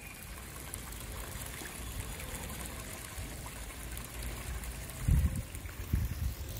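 Steady trickle of water running from a ditch into a fish pond, with a short low thump about five seconds in.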